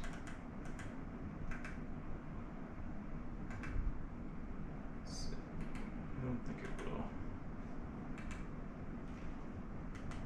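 Irregular short clicks and taps, spaced a second or more apart, from buttons being pressed on a telescope mount's hand controller keypad, over a steady low room hum.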